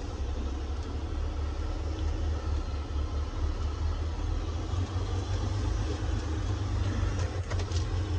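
A vehicle driving slowly over a dirt track, heard from inside the cab: a steady low engine rumble with road and cab noise.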